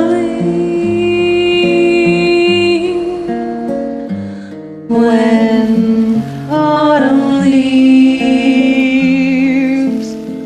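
A woman singing long held notes with vibrato over a plucked acoustic guitar backing track; the voice eases off briefly around the middle, then returns.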